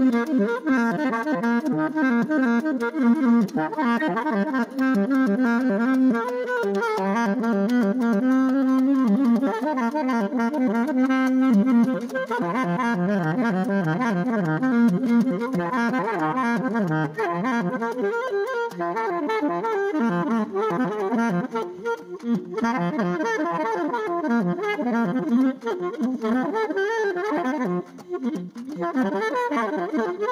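Solo alto saxophone improvising freely, playing quick, restless runs of notes almost without a break, with a longer held low note about eight seconds in.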